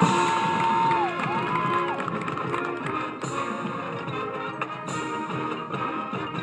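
Marching band playing its field show: sustained chords with percussion, and two sudden crashes about three and five seconds in.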